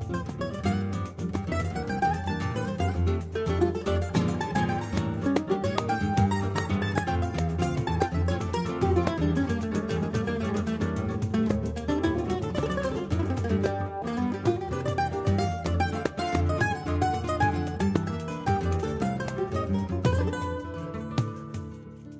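Instrumental choro played on plucked strings: Brazilian mandolin (bandolim) and acoustic guitars, among them a seven-string guitar, picking a busy melody with quick rising and falling runs.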